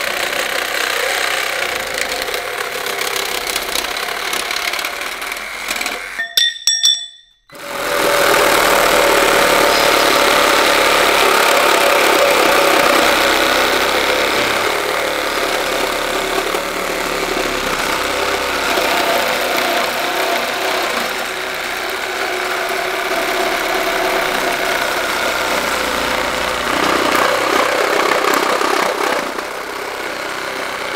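Metabo HPT 18-volt one-handed cordless reciprocating saw running, its blade cutting through a steel pipe. The sound cuts out briefly about seven seconds in, then the saw resumes louder and steady, cutting through a 2x4 with nails in it.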